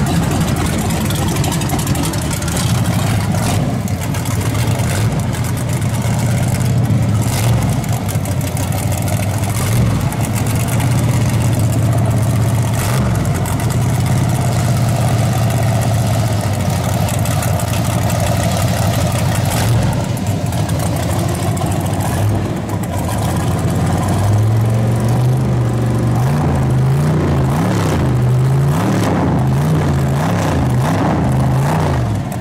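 Chevrolet Monte Carlo SS drag car's engine idling with a loud, steady low note. From about 24 seconds in, the pitch wavers up and down as the throttle is blipped.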